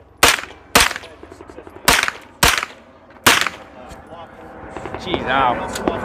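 AR-15-style rifle fired five times in quick semi-automatic shots: two pairs about half a second apart, then a single shot, each a sharp crack with a short echo.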